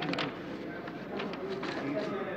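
Faint, indistinct speech, well below the level of the talk around it, with a couple of clicks near the start.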